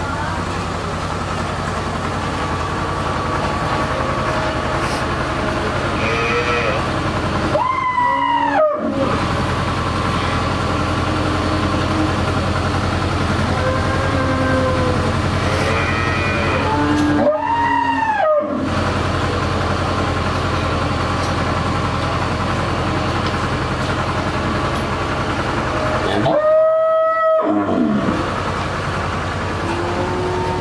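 Cattle lowing in a dairy shed: three loud drawn-out moos, each a second or so long and about nine seconds apart, over a steady low mechanical hum.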